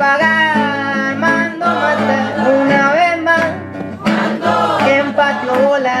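Live acoustic guitar strummed under a sung vocal line, with long, bending sung notes.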